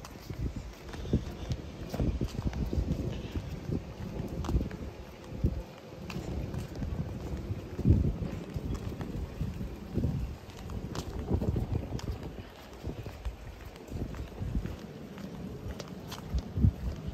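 Footsteps on a concrete walkway, an irregular run of low thumps and light scuffs from someone walking while filming.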